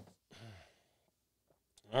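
A man's breathy sigh, then a short low murmur about half a second in; the rest is quiet until he begins to speak near the end.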